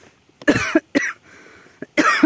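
A person coughs: a loud cough about half a second in, then a second, shorter one a moment later.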